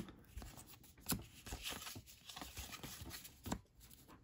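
Baseball cards being handled and sorted: quiet sliding and rustling of card stock, with a few light clicks as cards are set down, one about a second in and another near the end.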